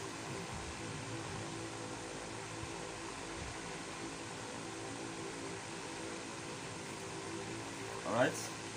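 Steady background hum and hiss, like a running fan, holding at an even level with no distinct knocks or scrapes.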